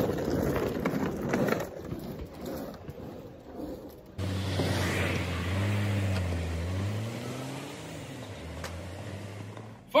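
Street noise, then about four seconds in a car engine comes in suddenly and runs steadily, its low note rising for a moment and then settling. The engine is the Saab 9-5's 2.0-litre turbo four-cylinder.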